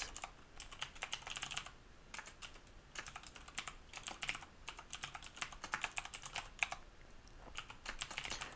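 Computer keyboard typing in quick runs of keystrokes, broken by short pauses about two seconds in and again near the end.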